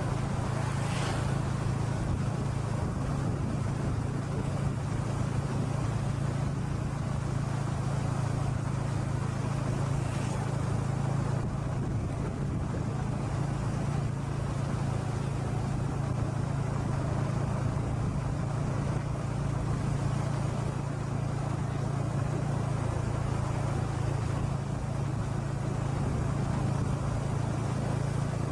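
Steady drone of a small vehicle engine with road and wind noise, heard on board as it rides along a rural lane.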